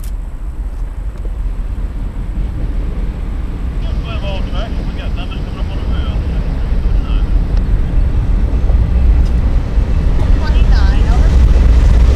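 Diesel-electric locomotives of a CSX intermodal train approaching, a deep engine rumble growing steadily louder as the lead units draw close.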